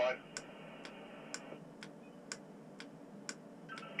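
Steady ticking, about two sharp ticks a second, inside a tower crane cab while the hoist takes up the load. There is also a faint radio hiss that cuts off about one and a half seconds in.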